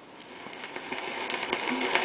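Opening of an old 78 rpm record: plucked banjo and guitar accompaniment fading in over the disc's surface hiss, growing steadily louder. The sound is thin and cut off at the top, as on an early acoustic-era disc.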